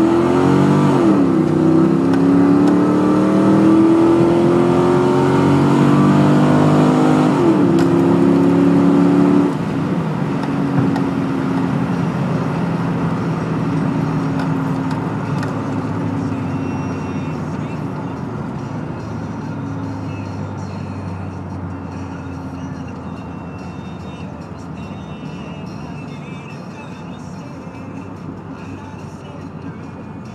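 Camaro SS's LS1 5.7-litre V8 heard from inside the cabin at full throttle, revs climbing and dropping at upshifts about a second in and again near 8 s. At about 9.5 s the throttle is lifted and the engine falls to a lower, fading drone as the car slows.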